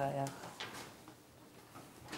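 The tail of a spoken word, then one faint soft knock of handling about half a second in, with little after it but faint room sound.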